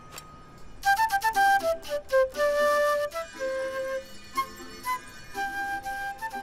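A flute playing a lively melody of short, distinct notes over light accompaniment, starting about a second in.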